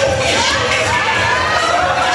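Audience cheering and screaming, many high voices overlapping at a loud, steady level.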